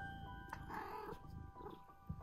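A British Shorthair kitten giving a short mew about a second in, over soft background music of held chiming notes.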